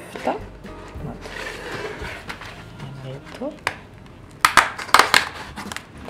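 A cardboard chocolate advent calendar door being picked open and the chocolate pressed out of its thin plastic tray: light rustling, then a quick cluster of sharp crackles near the end.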